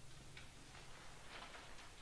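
Near silence in an auditorium just after a wind band has stopped playing, broken by a few faint clicks and rustles from the seated players between movements.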